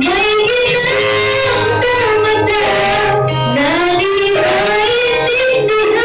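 Music: a young girl singing a melody into a microphone over backing music with guitar.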